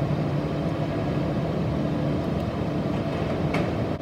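Steady low machine hum and rumble with a faint steady tone, even throughout, with no distinct knocks or clicks.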